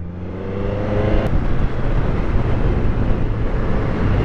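Triumph Street Triple 765 RS inline-three engine accelerating, its note rising over the first second. After a sudden change it gives way to a steady rush of wind and engine noise at road speed.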